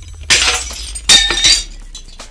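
Glass-shattering sound effects in a logo sting: two crashes about three quarters of a second apart, the second with a ringing tail, over a low hum.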